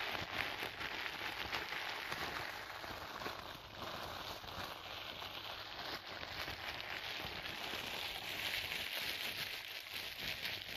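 Clear plastic wrapping crinkled and rubbed by hand close to the microphone: a continuous fine crackling, a little stronger near the end.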